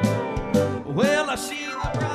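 Live country gospel music: piano with band accompaniment under a held, wavering melody line that swoops up about a second in and then slides back down.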